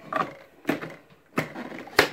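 Sharp plastic clicks and knocks from a Bosch Tassimo capsule coffee machine as its lid is worked and the used T-disc capsule is handled: four clicks about half a second apart, the last and loudest near the end as the lid comes open.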